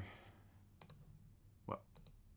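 A computer mouse button clicking, a quick pair of faint clicks about a second in, against quiet room tone.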